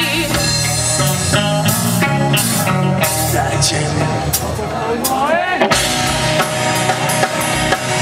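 Live rock band playing loud: drum kit with frequent cymbal crashes under bass and electric guitar. A line rises in pitch briefly about five seconds in.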